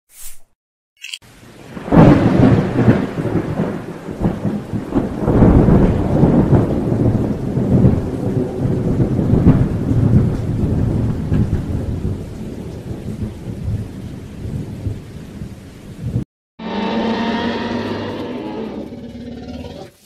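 Thunderstorm sound effect: rolling thunder with rain, surging loudest about two, five and nine seconds in. It stops suddenly with a brief gap, and a different sound with held pitched tones follows for the last few seconds.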